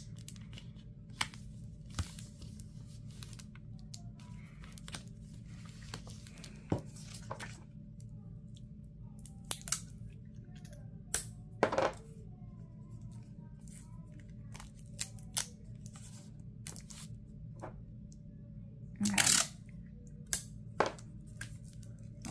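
Clear adhesive tape being pulled and torn off in short strips, with scattered crackles and rustles of paper and a plastic sticker sheet being handled. There is a longer, louder pull near the end, over a steady low hum.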